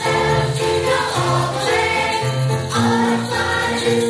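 Mixed choir of children and adults singing a Christmas song together, with piano accompaniment holding bass notes beneath the voices.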